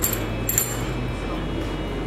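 Two light metallic clinks, one at the start and one about half a second in, as a big steel fishing hook is handled and set at a bench vice, over a steady low hum.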